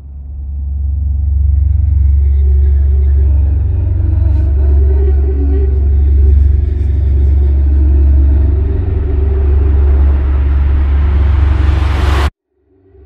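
Trailer soundtrack: a deep, steady low rumbling drone with sustained mid tones above it, swelling up into a rising hiss near the end and cutting off suddenly.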